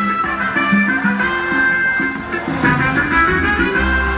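Live band playing Mizrahi music through a concert PA, heard from within the audience, with no clear singing in this stretch. The deep bass drops away for most of it and comes back in near the end.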